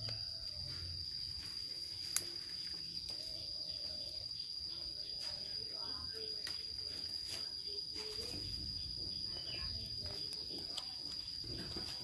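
A steady, high-pitched insect drone runs throughout, with faint distant voices and one sharp click about two seconds in.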